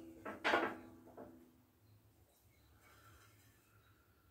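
A short clunk from steel hitch parts being handled about half a second in, with a couple of fainter knocks over the next second, then near silence.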